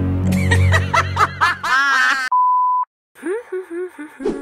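A low sustained drone with a high, wavering voice laughing in short pulses over it. About two seconds in, the voice is cut off by a half-second steady bleep tone. After a brief silence a voice comes back near the end.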